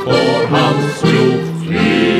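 Tyrolean folk music led by an accordion playing sustained chords and melody notes that change every half second or so.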